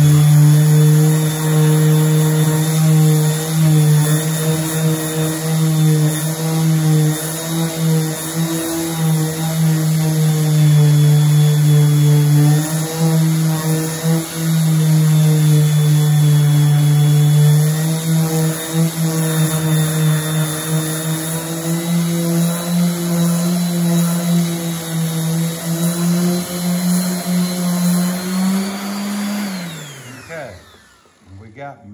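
Corded DeWalt random orbital sander with coarse 40-grit paper running steadily against a wooden board, a loud, even motor hum that dips and rises slightly with the pressure on it. Near the end its pitch rises, then it is switched off and winds down.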